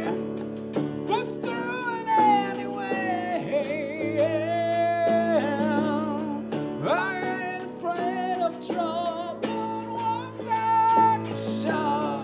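Live song played on a Gretsch archtop electric guitar and a keyboard, with sustained chords underneath a sung melody that glides and wavers with vibrato.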